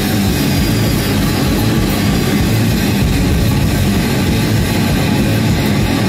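Live rock band playing loud and without a break: electric guitar strummed over a full drum kit with cymbals.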